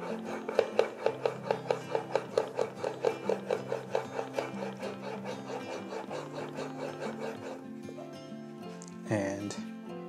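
A steel chisel in a honing guide is rubbed back and forth on an 8,000-grit Shapton ceramic waterstone in quick, even strokes, about three a second, honing a 30-degree micro bevel. The strokes stop about three-quarters of the way through, and a brief rub follows near the end.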